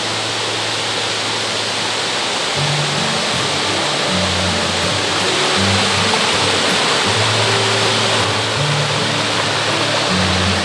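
Steady rush of a mountain stream pouring over rocks and small falls, mixed with background music whose low bass notes start moving about two and a half seconds in.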